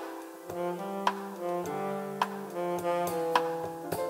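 Live jazz trio: saxophone playing a sustained, improvised melody over piano and drum kit, with sharp drum and cymbal strokes about twice a second.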